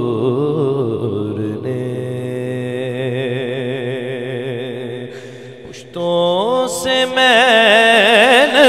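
A man's voice singing a naat in long held, wordless notes with a wavering vibrato. The sound thins out about two-thirds of the way through, then a louder phrase begins with a rising glide into a new held note.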